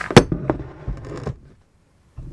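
A sharp knock, then a few softer knocks and rustling as things are handled and moved past the camera. The sound cuts out to silence about three-quarters of the way through.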